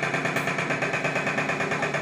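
Steady machine noise with a rapid, even flutter, from a motor-driven machine running.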